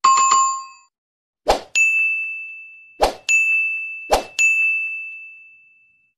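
Subscribe-button animation sound effects: a short chime at the start, then three times a thump followed by a bright bell-like ding that rings out and fades, the last one dying away near the end.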